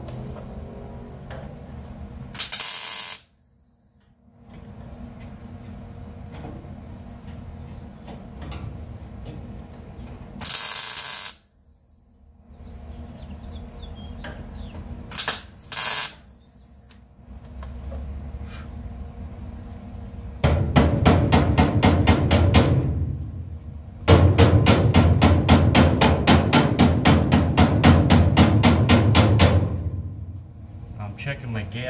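A welder tack-welding sheet steel in four short crackling bursts. Then two long runs of rapid, even hammer-on-dolly tapping on the steel panel, about six strikes a second, with a brief pause between them. The tapping brings the heat-distorted panel back flush for welding.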